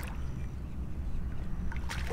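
A hooked flounder splashing at the water's surface as it is played in beside the kayak, over a steady low rumble.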